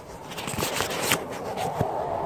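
Close handling noise on a phone microphone: a hand and sweater sleeve rubbing and brushing against the phone, an irregular rustle with a few sharp clicks.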